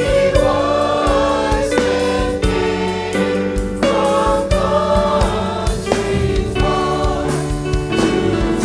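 Women's choir singing in harmony through microphones, holding long chords that change about once a second.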